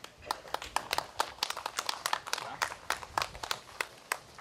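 Scattered applause from a small group of people clapping their hands, with uneven claps several times a second.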